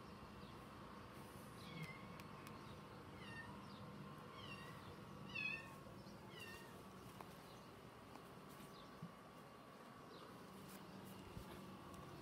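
Faint series of short, high, falling animal calls, about eight of them over some five seconds, the loudest about halfway through, over a faint steady background hum.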